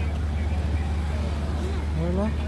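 Indistinct voices over a steady low rumble.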